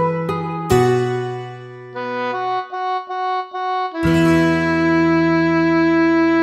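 Instrumental interlude of a song with no singing: held chords and melody notes, a quieter run of short single notes in the middle, then a full sustained chord about four seconds in.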